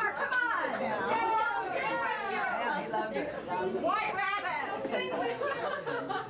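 Several people talking at once: indistinct chatter in a large room.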